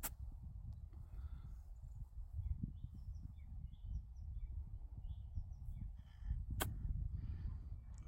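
A golf chip shot: a single sharp click of the club face striking the ball about six and a half seconds in, after a lighter click of a practice swing brushing the grass at the very start. Wind rumbles on the microphone throughout, with a few faint bird chirps.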